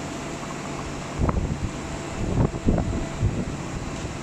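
Steady hum of shop room ambience, like a running fan or air conditioner. A few short low bumps on the microphone come about a second in and again between two and three and a half seconds.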